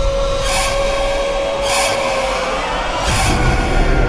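Horror-trailer sound design: a heavy low rumbling drone under held eerie tones, cut by three short, harsh hissing screeches about a second and a half apart.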